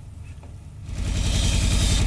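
News-broadcast transition sound effect: a whooshing rumble that swells up about a second in.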